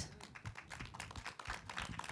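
Faint, irregular small taps and rustles of paper being handled, along with handling noise on a handheld microphone.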